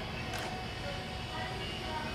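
Steady low room rumble with a single sharp click about half a second in.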